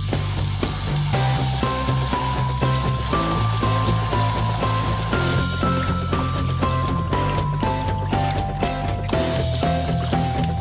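Background music with a stepping melody over a bass line. Under it, tap water runs into a basin of rice for about the first five seconds, then hands rub and swirl the rice grains in the water.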